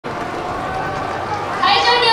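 Background murmur of an outdoor crowd, then a loud, bright voice starts about one and a half seconds in.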